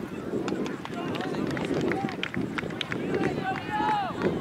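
Indistinct murmur of spectators' voices at a youth soccer match, with scattered short clicks and ticks and a brief raised voice near the end.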